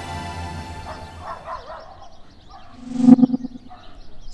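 Music fades out, followed by faint warbling chirps, then about three seconds in a short, loud, pulsing buzz: a sound-effect zap for a teleport arrival.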